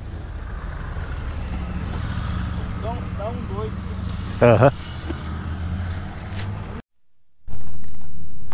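Motorcycle engine idling steadily, with a couple of short voices over it. Near the end the sound drops out for a moment, then comes back much louder and holds steady.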